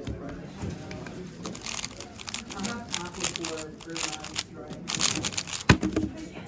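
A 3x3 speed cube being turned very fast through a solve of about four and a half seconds: a dense run of rapid plastic clicks. Near the end comes a sharp thump as the hands slap down on the Speed Stacks timer to stop it.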